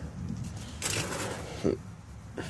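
A brief rustling scrape of parts being handled, lasting about half a second, a little under a second in, then a short grunt-like voice sound near the end.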